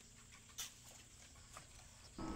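Near silence, with two faint, brief clicks: one just over half a second in and one about a second and a half in.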